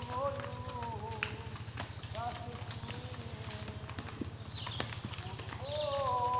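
Horses' hooves clopping irregularly as several horses walk along a dirt path, with a person's voice heard at times and a few short bird chirps near the end.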